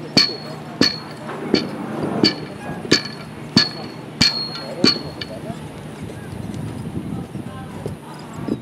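Regular sharp metallic clinks, each with a short ringing tone, about three every two seconds; they stop a little past halfway, over a low murmur of voices.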